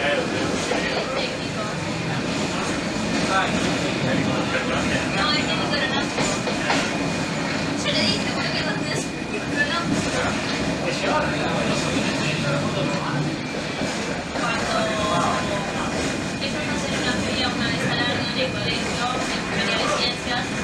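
A moving train: the CRRC Ziyang CDD6A1 diesel-electric locomotive running and wheels rolling on metre-gauge track, a steady running noise with no breaks.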